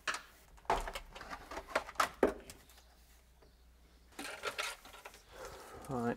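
Plastic cable trunking lid being peeled off its base: a run of sharp clicks and snaps over the first couple of seconds as it comes free of the clips, then softer handling rustle about four seconds in.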